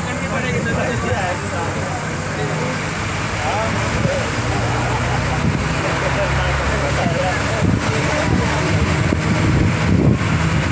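Babble of several people's voices over steady road traffic and a running vehicle engine.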